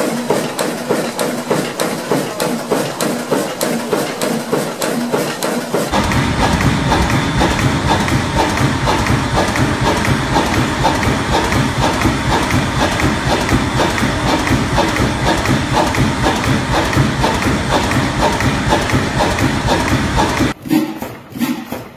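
Old Ruston & Hornsby stationary diesel engines running with a steady, rhythmic thudding beat of a few strokes a second. About six seconds in the sound switches to a deeper, louder-running engine.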